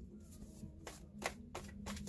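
A deck of tarot cards being shuffled by hand: a quiet run of short card flicks and slaps, several a second at an uneven pace.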